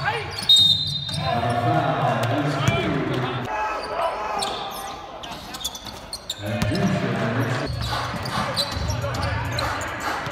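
Courtside sound of a basketball game in a sports hall: players' voices and shouts over a ball bouncing on the court. About half a second in comes a loud knock, followed by a short high whistle.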